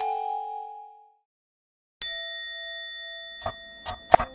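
Intro chime sound effect: bell-like ding notes ring out and fade over the first second. After a moment of silence a single bright ding strikes halfway through and rings slowly away. Two short knocks come near the end, the first knife strokes on a wooden cutting board.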